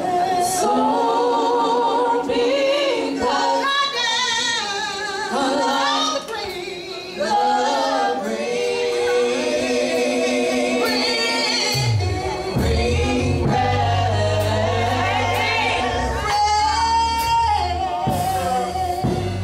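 Female gospel vocal group singing in harmony with heavy vibrato, unaccompanied at first. About twelve seconds in, a bass guitar comes in under the voices.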